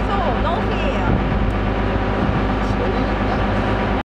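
A motorboat's engine running steadily with a low hum under a continuous rush of wind and water noise as the boat moves.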